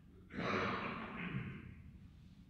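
A person's long breathy exhale, like a sigh, starting about a third of a second in and fading over about a second and a half.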